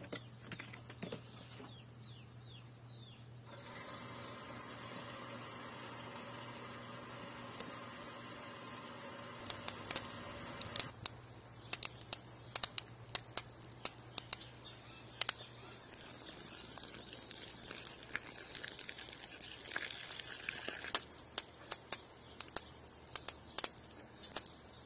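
Small half-horsepower electric surface water pump switching on a few seconds in and running with a steady hum, which drops away near the middle. Then irregular clicks and knocks of handling, and in the second half the hiss of a pressurised jet of water spraying from a hose nozzle.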